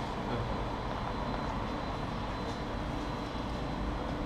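Steady workshop background noise: an even low rumble with hiss.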